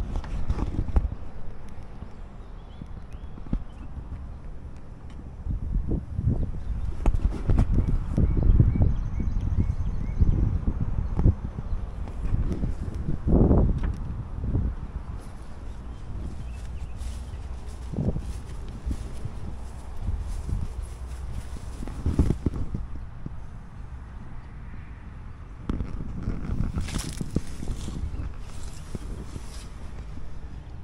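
Footsteps walking on grass: a run of irregular, soft, low thumps, busiest through the middle and again near the end.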